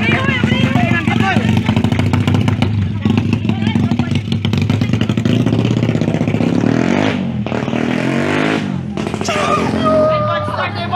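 A motorcycle engine running steadily, then revved up and down a few times about seven seconds in, under crowd voices.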